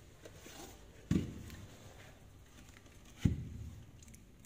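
Two dull thumps from hands handling a karaoke speaker cabinet, one about a second in and another near the end, with faint handling noise between them.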